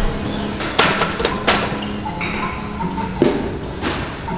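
A loaded barbell being set back into a squat rack after a set: a cluster of sharp clanks and knocks about a second in, then two more near the end, as the bar and its bumper plates meet the rack's hooks. Hip-hop music plays underneath.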